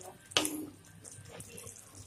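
Thick poppy-seed chicken gravy simmering in a wok on low flame, bubbling and sizzling faintly. About half a second in, the spatula gives one short clack against the pan.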